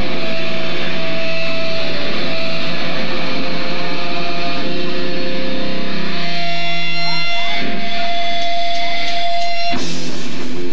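Live sludge-metal band playing loud, heavily distorted electric guitars with long held notes. About six seconds in the sound thins out to sustained ringing tones, and just before the end the full band comes crashing back in.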